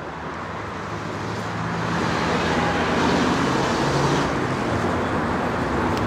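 Road traffic: a motor vehicle's engine and tyre noise swelling for about three seconds as it passes close by, then easing slightly and holding.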